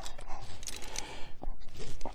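A few light clicks and scrapes from a climber's rope-ascending gear, rope and boots against rock as he steps up on the rope at a ledge.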